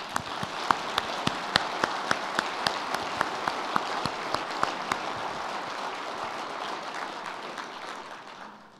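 Audience applauding, with one person's claps close to the microphone standing out sharply at about three a second; the applause fades away near the end.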